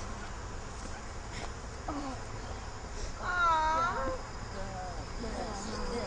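A person's voice making a short, wavering drawn-out vocal sound about three seconds in, with a few fainter voice fragments around it, over a steady outdoor background with a faint high hum.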